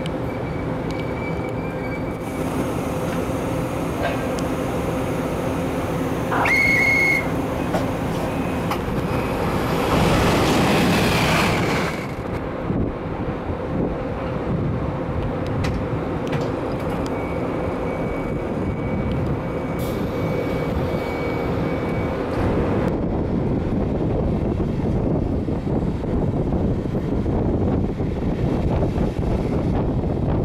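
Regional train of n-Wagen (Silberling) coaches heard from a coach window, with steady wheel and rail running noise. A short high tone sounds about 7 s in, and a loud hiss follows from about 10 to 12 s. The rolling noise grows in the last few seconds.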